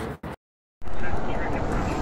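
Steady outdoor street noise with faint voices in the background, broken about a third of a second in by half a second of dead silence where the recording drops out, then coming back louder.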